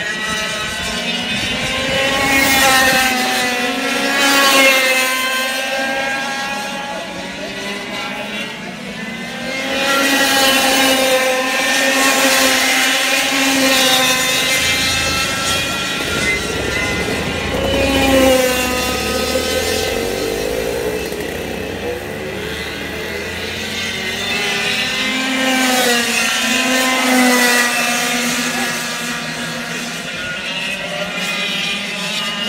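Several F100 racing karts with 100cc two-stroke engines lapping the track. The engines' pitch rises and falls as the karts accelerate and pass, and the sound swells loudest several times as the pack goes by.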